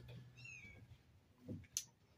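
A faint, brief animal call falling in pitch about half a second in, followed by a short sharp click near the end.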